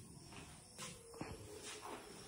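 A few faint, short squeaks of bats roosting in the rooms, three brief calls in a row, two of them falling in pitch.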